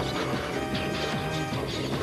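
Live rock band playing an instrumental passage: a fast, steady drum beat under sustained held tones.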